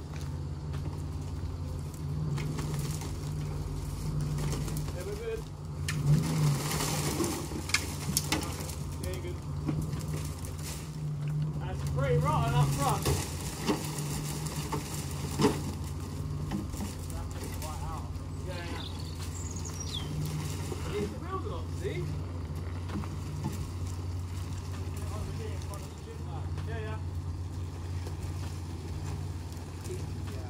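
An engine running steadily with a low, unchanging hum, under faint voices and a few knocks and rustles.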